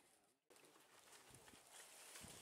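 Near silence: a dead-silent gap in the first half second, then faint outdoor background noise with a few soft ticks.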